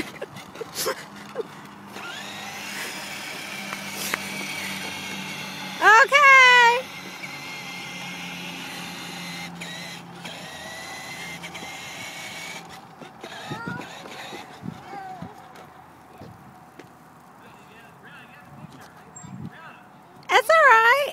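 Electric motor and gears of a battery-powered toy ride-on quad whining steadily as it drives, dying away about two-thirds of the way through. A loud voice calls out once near the middle.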